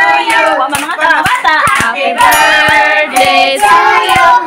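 A group, children among them, singing a birthday song with hands clapping along in a steady beat of about two to three claps a second.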